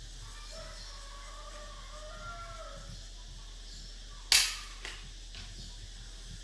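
A wooden xiangqi piece set down sharply on a cardboard board over a tile floor: one loud click about four seconds in, followed by a smaller click as the piece is made to capture.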